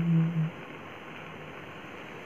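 A man singing unaccompanied holds the last note of a line for about half a second. It then stops, leaving faint room tone.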